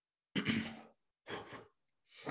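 A man's breathy vocal sounds, three short bursts of about half a second each, the first starting abruptly.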